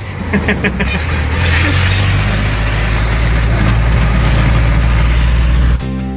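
Small truck's engine and road noise heard from inside the cab while driving: a steady low drone with rushing noise. A person laughs briefly near the start, and acoustic guitar music cuts in at the very end.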